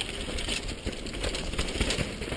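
Mountain bike descending a dry dirt trail at speed: tyres rolling on dirt under a constant stream of small rattles and clicks from the bike, picked up by a bike-mounted action camera.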